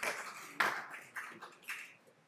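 Scattered hand claps and light taps as applause dies away, the loudest clap a little over half a second in and a few fainter ones after.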